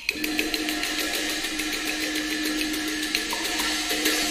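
Teochew opera instrumental accompaniment: a fast, even roll of sharp clicking percussion strokes over a single held note.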